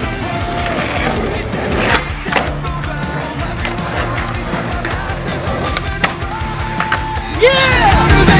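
Skateboard wheels rolling on concrete, with several sharp clacks of the board popping and landing, over background rock music. Near the end a swooping sound leads into louder music.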